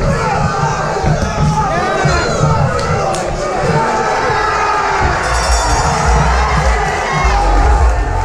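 Boxing crowd cheering and shouting as the bout ends, many voices yelling over one another, with a low rumble building under it in the second half.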